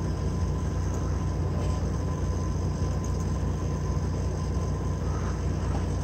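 A steady low mechanical hum or drone with a thin high tone above it, unchanging throughout.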